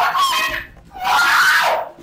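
Two loud vocal cries, the first short and the second longer, each under a second.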